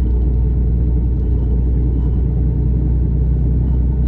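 Steady low rumble of a lorry's diesel engine and road noise, heard from inside the cab while driving.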